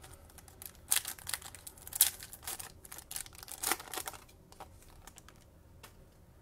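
Foil trading-card pack wrapper crinkling in the hands and cards being handled and slid against each other, with sharp crackles about one and two seconds in and again near four seconds, then quieter rustling.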